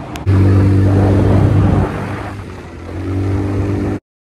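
A small engine revved up and held at a steady high pitch for about a second and a half, dropping back, then rising again near the end. A sharp click comes just before it starts.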